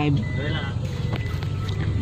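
Steady low rumble of a car driving, its engine and tyres heard from inside the cabin.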